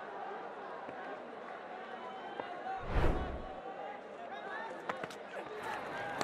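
Steady crowd and field-side voices in a cricket stadium, with one loud burst about halfway through that is deep and lasts under a second.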